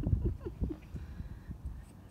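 Hands handling a plastic-shelled glass water bottle: a low rumble and a few short squeaks in the first second, then fainter scattered clicks.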